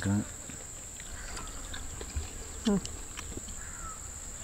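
Insects chirring in one steady high-pitched drone, with a short spoken word about two-thirds of the way in.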